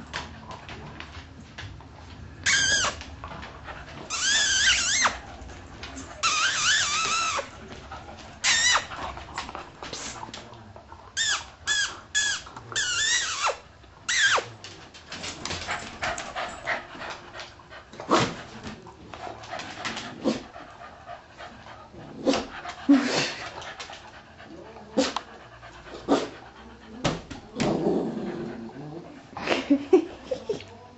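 Dog whining in high, wavering cries, several of them about a second long, in the first half, among many short clicks and knocks.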